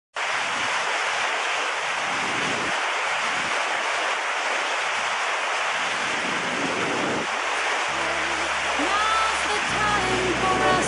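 Steady rush of churning, foaming water. About eight seconds in, music comes in with sustained low bass notes, and higher tones join just before the end.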